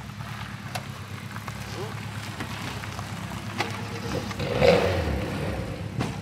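A car engine idling steadily close by, with a brief louder swell about four and a half seconds in.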